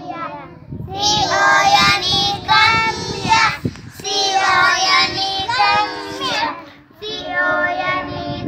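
A group of young children singing a rhyme together, breaking off briefly about a second before the end, then starting again.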